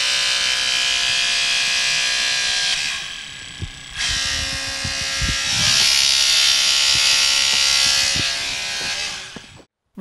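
Electric hydraulic rescue combi tool (cutter-spreader) running, its motor-pump whining at a steady pitch as the jaws move. About three seconds in it eases off for a second, then runs again louder, and it stops just before the end.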